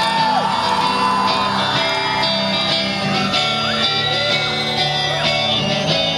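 Live rock band playing the start of a song, electric guitar prominent, with shouts and whoops from the audience over it.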